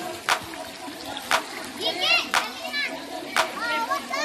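Children shouting and squealing in high voices, with a sharp clap-like beat repeating about once a second underneath.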